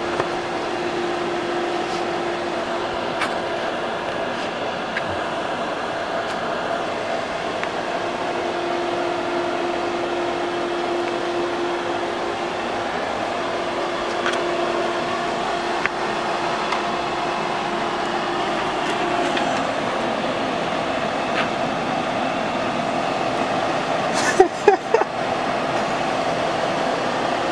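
Hooded bonnet hair dryer running with a steady whir and a faint hum. A few short clicks and knocks come near the end.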